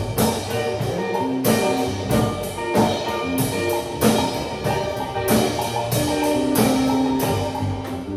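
Live band playing an instrumental jam: a drum kit keeping a steady beat with cymbal hits, under electric bass and keyboard.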